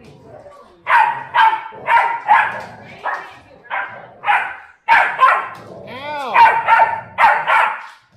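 Pit bull barking over and over in rough play, short barks coming about two a second, with a high rising-and-falling whine about six seconds in.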